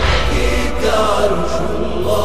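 A chorus of male voices chanting the refrain of a Shia latmiyya over a steady low drone, dense and crowd-like rather than one clear voice.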